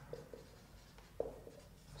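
Marker pen writing on a whiteboard: faint short strokes, with one sharper tap about a second in.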